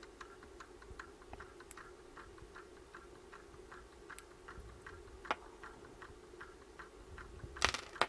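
Faint, rapid ticking from a solar dancing toy's swinging magnet-and-coil rocker, a few light clicks a second, over a steady low hum. A single louder knock comes near the end.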